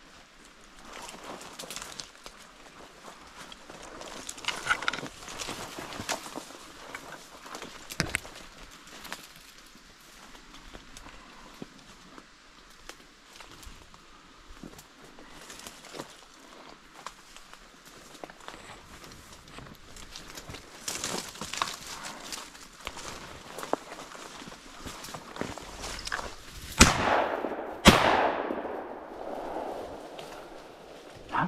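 Footsteps and brush rustling through dense saplings and dry leaves, then two shotgun shots about a second apart near the end, each with a ringing tail and louder than anything else. They are fired at a bird flushed from a dog's point, and both miss.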